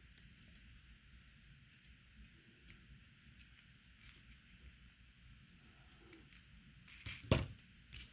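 Faint snips and clicks of scissors trimming leather cord ends, with small plastic pony beads handled on a tabletop. Near the end comes a single sharp knock, the loudest sound here.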